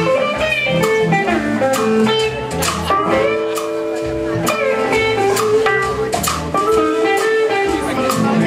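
Live blues band playing an instrumental passage, a guitar-led lead line over drums and bass, with two long held notes in the middle.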